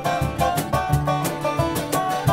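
Live acoustic bluegrass band playing: rapid banjo picking, fiddle and strummed acoustic guitar over a steady pulse of low bass notes.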